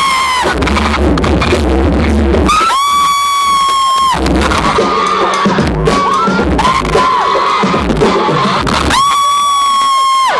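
Live concert: amplified music over the PA with a heavy bass beat, and an audience screaming and cheering throughout. Three long, high-pitched screams are held near the microphone: at the start, about three seconds in, and near the end.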